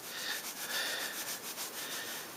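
Soft, steady rubbing noise.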